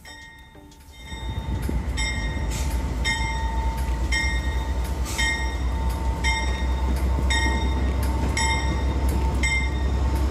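GE P42DC diesel locomotive with its 16-cylinder engine throttling up as it pulls away: a low rumble rises sharply about a second in and then holds steady. A ringing note repeats about once or twice a second over it, fitting the locomotive's bell.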